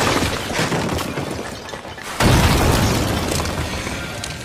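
A wall bursting apart with a loud crash and falling debris, then a second deep boom about two seconds in, each dying away.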